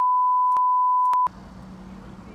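Censor bleep: one steady, high-pitched pure beep lasting about a second and a quarter, with the conversation fully muted beneath it, cutting off suddenly. It marks something said that was edited out, here a remark about who is not natural. Faint background ambience follows.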